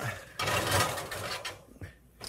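A metal pan scraping as it slides out over an oven rack for about a second, followed by a light clack.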